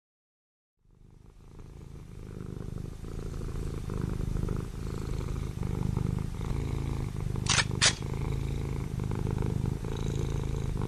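A cat purring, a low steady pulsing that fades in after about a second of silence. Two short sharp sounds come close together about seven and a half seconds in.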